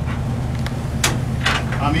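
Steady low drone of the patrol ship's engines and machinery heard inside the bridge, with two short sharp knocks about a second in and halfway through. A man's voice begins just at the end.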